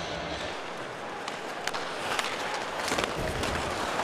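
Hockey rink sounds: skate blades scraping on the ice and a few sharp clacks of sticks and puck, over steady arena background noise.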